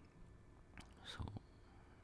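Near silence: room tone, with a faint breath and a single quiet murmured syllable about a second in.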